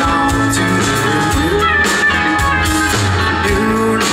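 Live band playing a rock song, guitars to the fore over drums and bass.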